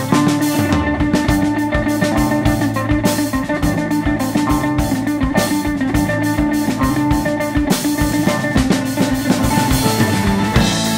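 Live band playing an instrumental break: a mandolin lead over drum kit and bass, with a steady beat.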